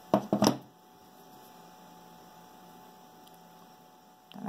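A few quick knocks as a hot glue gun is set down on the work table, followed by a faint steady hum.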